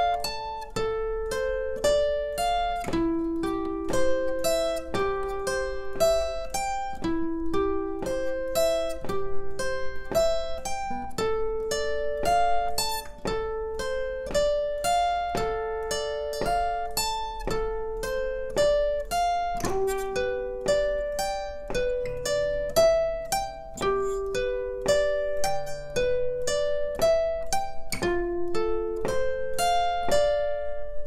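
Acoustic guitar picked with a plectrum, playing a slow, even arpeggio exercise: single notes one after another, each left ringing, in a steady rhythm.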